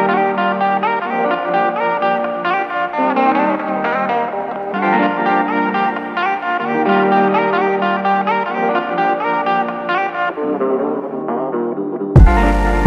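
Instrumental electronic hip-hop track: a layered melodic loop of pitched instruments with no deep bass, thinning out about ten seconds in.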